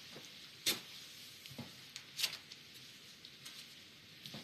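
A few faint knocks of objects being handled, the two clearest about a second and a half apart, over quiet room tone.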